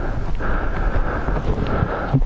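Wind on a microphone that has no windscreen: a steady rushing hiss with a low rumble underneath.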